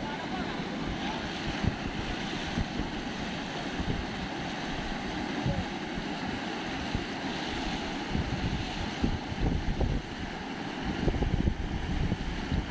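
Muddy floodwater rushing and churning over a road, with wind buffeting the microphone in gusts that grow heavier near the end.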